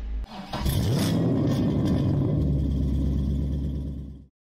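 Car engine starting about a quarter second in, revving up, then running steadily.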